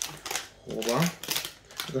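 Plastic chocolate-bar wrapper being peeled open along its resealable glue flap, crackling in quick clicks, with a short vocal sound in the middle.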